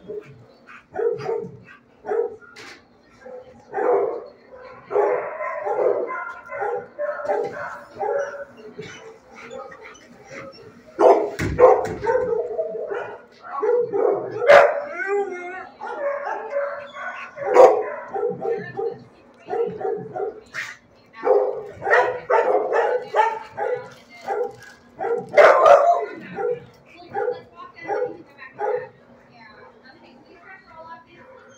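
Several dogs in a shelter kennel block barking over and over, short barks following one another closely throughout, with a faint low steady hum underneath.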